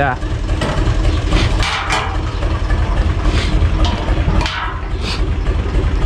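A steady low engine rumble, like an engine idling, with a few short knocks and scrapes from a metal jerrycan being handled.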